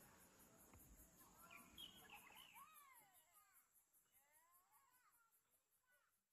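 Near silence: very faint outdoor ambience of birds chirping, mostly in the middle, over a steady high insect trill. It fades out near the end.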